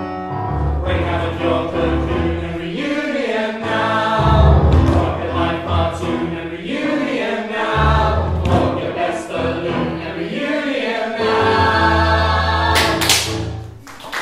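Mixed male and female ensemble singing a musical-theatre number in harmony with instrumental accompaniment. A sudden bright, crash-like noise cuts in about a second before the end.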